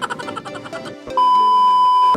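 Background music, then about a second in a loud steady test-tone beep, the kind played with TV colour bars, that holds for about a second and cuts off sharply.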